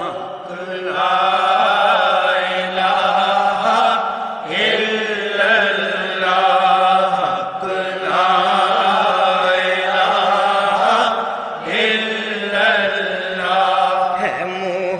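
Devotional singing: a voice holding long, wavering notes over a steady low drone, with short breaks between phrases.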